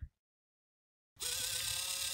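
FS90R continuous-rotation micro servo running under PWM control: a steady small-motor whine that starts suddenly about a second in.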